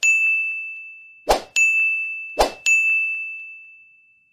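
Three animated-button sound effects about a second apart, each a short swoosh followed by a bright, high ding that rings on and fades away.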